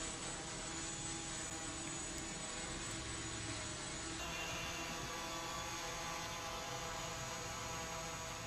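Quanser Qball quadrotor's four propellers spinning in flight: a steady hum made of several fixed tones.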